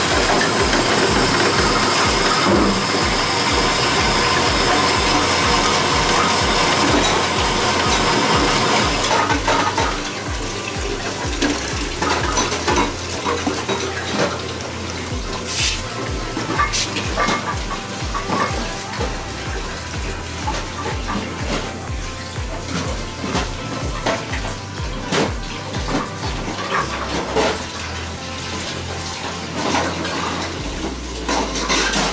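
Water running, as from a kitchen tap, for about the first nine seconds, then scattered clinks and knocks of dishes and utensils being handled.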